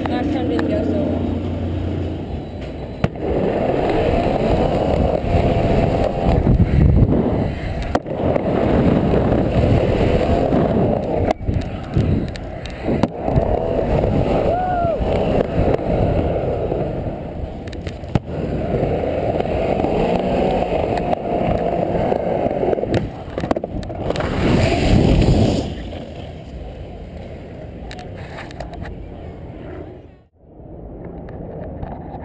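Skateboard wheels rolling fast on the wooden MegaRamp, heard from a camera on the rider. The rolling sound swells and fades in several long passes, broken by a few sharp knocks of the board hitting and landing.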